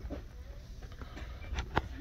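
Steady low background hum of a shop aisle, with two short sharp clicks in quick succession about one and a half seconds in.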